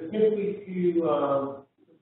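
A man's voice drawn out in a long, hesitant filler sound with a sliding pitch, stopping just before the end.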